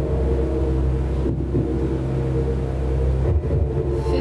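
Quiz-show thinking-time music: a low, steady drone of sustained tones.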